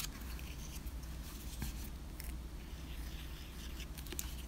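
Faint rustling and a few light clicks of small cardstock pieces and a paper envelope being handled on a craft mat, over a low steady hum.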